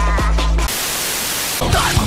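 A song cuts off into about a second of white-noise static, then a different, heavier music track starts near the end.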